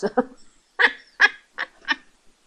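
A woman laughing after a trailing word: four short bursts of laughter about a third of a second apart.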